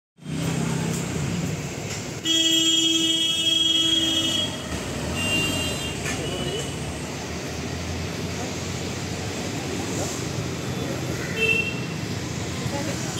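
A vehicle horn held in one steady blast of about two seconds, starting about two seconds in, over a constant hum of road traffic.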